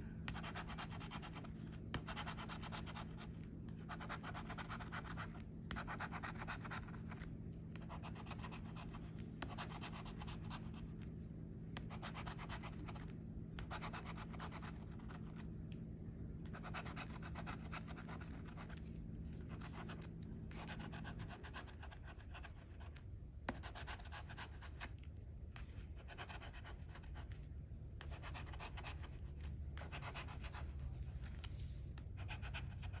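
A bottle-opener-shaped scratcher tool scraping the coating off the number spots of a scratch-off lottery ticket, in repeated strokes every second or two. A low steady hum runs underneath and stops about two-thirds of the way through.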